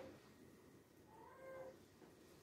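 Near silence, with one faint, brief pitched call about a second in.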